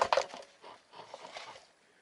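Brief rustling and clicking handling noise, loudest at the start and dying away after about a second and a half.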